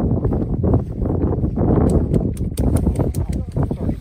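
Indistinct voices close to the microphone over a dense low rumble of handling or wind noise, with a run of sharp clicks in the second half.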